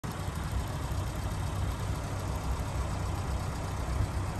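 1995 Suzuki Jimny Sierra's 1.3-litre eight-valve four-cylinder engine idling steadily, with the bonnet open.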